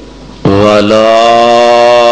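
A man chanting Quranic recitation (tilawat) in a melodic style. About half a second in he opens on a single loud syllable, "wa", and holds it as one long ornamented note.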